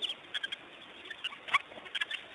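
African wild dogs (painted dogs) twittering: a scatter of short, high, bird-like squeaks and chirps, the loudest about halfway through.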